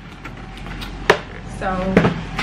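Plastic storage containers being handled in their cardboard box: a faint rustle, then one sharp knock about halfway through.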